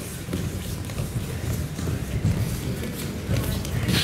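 Many bare feet thudding and shuffling on judo mats in an irregular run of low thuds, as a group of children moves round the mat in a leg-sweep warm-up drill.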